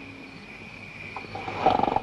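Pig grunting, a short run of rough grunts that grows louder near the end.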